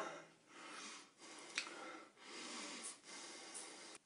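A man breathing faintly, four soft breaths about a second apart, with a short click about one and a half seconds in.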